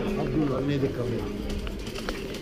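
A man's voice answering briefly in the first second, then fainter background chatter of a busy market street.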